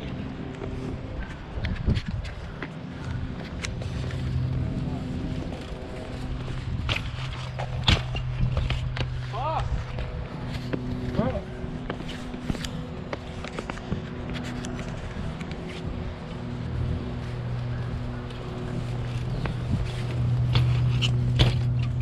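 BMX bike riding on a concrete skatepark: tyres rolling and a few sharp knocks from landings, the loudest about eight seconds in, over a steady low hum.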